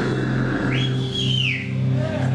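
A low note from the band's amplifiers rings on steadily after the full band stops playing, with a high whistle over it that rises sharply about two-thirds of a second in, holds and glides back down near the end.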